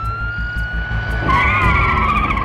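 Police vehicle siren wailing, its pitch held high and starting to fall near the end, over a low vehicle rumble. A wavering screech joins in for the last part.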